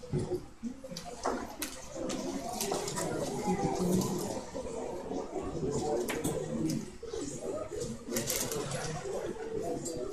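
Thin Bible pages rustling as they are leafed through, in irregular short bursts, with faint low murmured voices underneath.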